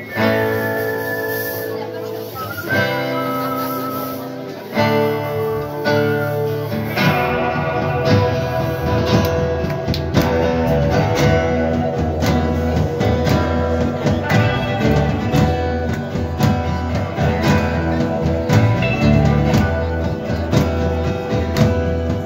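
Live instrumental band music: guitars and electric bass. It opens with held, ringing guitar chords, and from about seven seconds in the band settles into a steady strummed rhythm with a stronger bass line.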